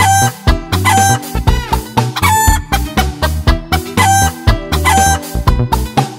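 Hen cackling, about five drawn-out clucking calls roughly once a second, each rising and then held, over upbeat children's music with a steady bass beat.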